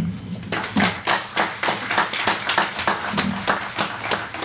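An audience applauding: a crowd clapping by hand, starting about half a second in.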